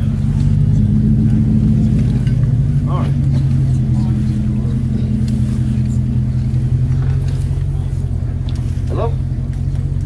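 A steady low hum like an idling vehicle engine runs throughout, with a few scattered voices from the crowd over it. A man says "Hello?" near the end.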